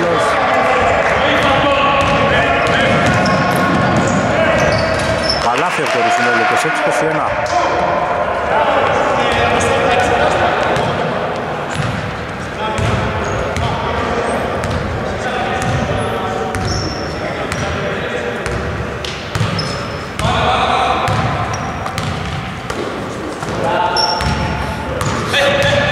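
A basketball being dribbled and bouncing on a wooden gym floor during play in a large sports hall, with voices heard over it.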